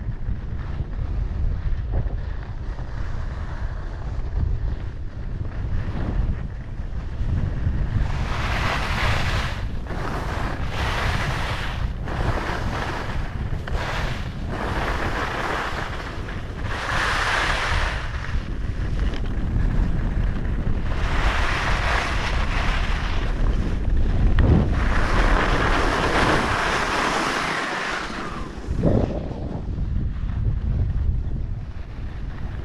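Wind buffeting the camera microphone during a fast ski descent, a constant low rumble. From about a third of the way in, stretches of louder hiss lasting a second or more come and go as the skis scrape over firm groomed snow.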